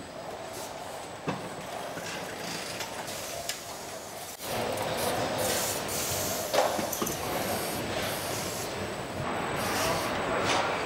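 Car assembly-line noise at a wheel-fitting station: a steady machinery and air noise from the wheel manipulators and bolt-tightening tools, with a few sharp metallic knocks. It gets abruptly louder about four and a half seconds in.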